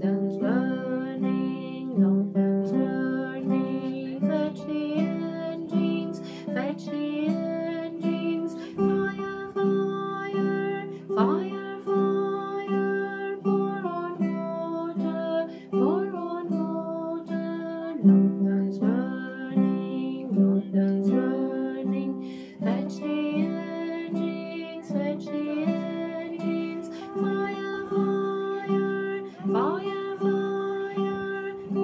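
Classical guitar playing an instrumental passage, plucked and strummed chords in a steady, even beat.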